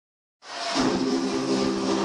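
Worship-song music starting about half a second in with a held chord of several steady tones, over a noisy background of a crowded hall.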